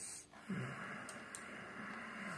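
A person breathing softly near the microphone, with a brief low hum about half a second in, then two faint clicks a quarter-second apart.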